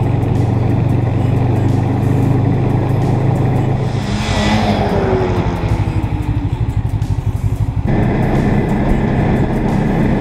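Snowmobile engine running under the rider on a trail. About four seconds in, the engine note falls in pitch and turns to a rapid low pulsing as the throttle eases. Near eight seconds it switches abruptly back to a steady engine note.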